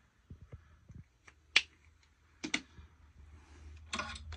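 Small hard objects handled and set down on a desk: a few soft taps, a single sharp click about one and a half seconds in, then a quick double click about a second later.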